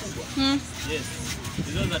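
A woman's voice making a short hummed syllable about half a second in and another brief vocal sound near the end, over a steady low background rumble.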